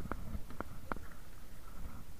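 A few short, light knocks and clicks, four or five spread through the first second, over a low steady rumble of wind and water.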